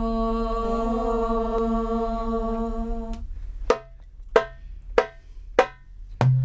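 A girls' nasheed group holding one long note together for about three seconds, then a lower steady hum under four sharp percussive beats, evenly spaced a little over half a second apart, that count into the chant.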